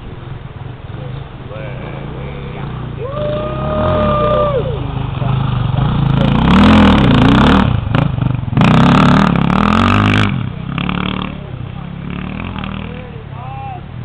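Off-road dirt bike engine approaching along a dirt track, revving up and down as it passes close by about seven to ten seconds in, with a brief drop in the middle, then fading as it rides away.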